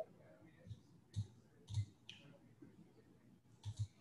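Computer mouse clicking: about half a dozen faint, separate clicks, with two close together near the end.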